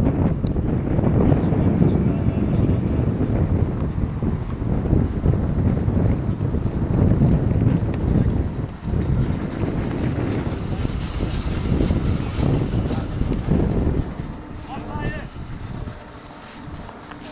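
Strong wind buffeting the microphone, a loud, uneven low rumble that eases about two seconds before the end.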